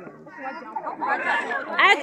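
Voices of several people talking over one another, louder in the second half.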